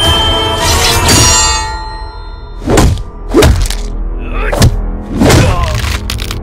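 Film fight-scene soundtrack: the music score plays, then from about three seconds in come four heavy hit sound effects of blows landing.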